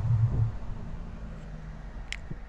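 A dull low thump at the start, then a steady low hum and hiss inside a vehicle cab.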